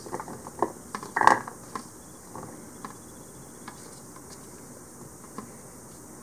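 Cut garlic scape pieces dropping into a plastic food-chopper bowl as a silicone spatula scrapes them out of a glass bowl. A few light clicks and knocks come in the first two seconds, the loudest just over a second in, then only faint, scattered ticks.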